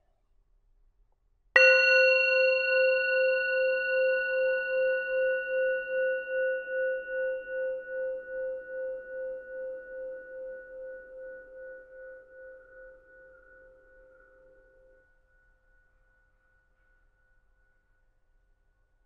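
A meditation bell struck once about a second and a half in, ringing with a low, pulsing tone and higher overtones that slowly fade away over about thirteen seconds. It is the signal to close the eyes and begin the meditation.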